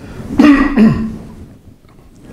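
A man clearing his throat once, a short voiced rasp about half a second in.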